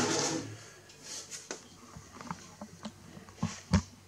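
Sheet-metal top cover of a test instrument scraping as it slides off, fading in the first half second. A few light clicks follow, and a low thump near the end as the cover is handled.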